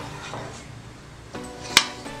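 A spoon stirring kadhi in a stainless steel pan, with one sharp clink of the spoon against the pan near the end, over faint background music.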